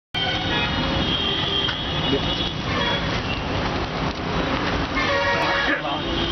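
Busy street traffic with vehicle horns tooting, near the start and again near the end, and people's voices in the background.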